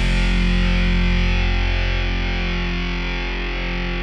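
Rock music: a distorted electric guitar chord run through effects, left to ring and slowly fading.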